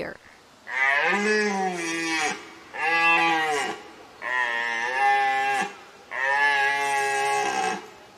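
Red deer stag roaring, the rutting call of a stag: four long roars of a second or more each, with short pauses between.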